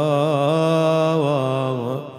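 A man chanting an Arabic elegy, holding one long note with a wavering, ornamented pitch that fades out near the end.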